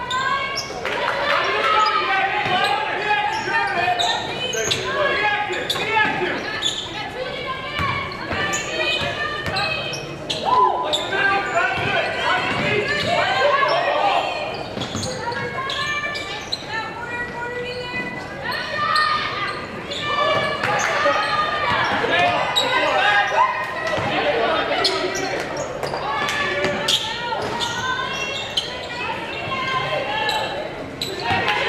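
A basketball dribbling on a hardwood gym floor during live play, with sharp bounces heard among indistinct voices of players and spectators calling out throughout.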